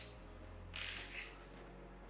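Faint brief rustling and scraping of a hex driver working a screw on a 3D printer's power supply, over a low steady hum.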